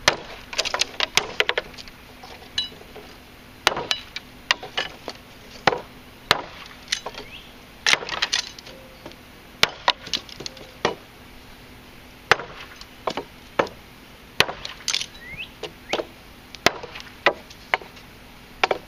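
A Brightleaf chopper, a large knife with a 13.5-inch blade, chopping through small-diameter dry, hard, dead sticks laid on a wooden block: a long run of sharp chops and cracks at uneven intervals, some in quick clusters.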